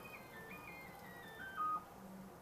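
AMCI SMD23E integrated stepper motor jogging a ball screw, its thin whine stepping down in pitch as its speed is cut from about 14,000 to about 1,500 steps per second. It is loudest near the end.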